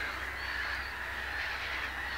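Distant waterbirds calling across a lake: a steady background din with a few faint, short, high calls.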